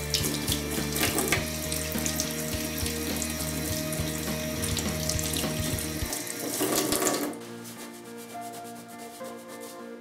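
Water running from a kitchen mixer tap into a stainless steel sink while hands are washed under the stream. It swells briefly near the seventh second and then falls away sharply, as the flow stops.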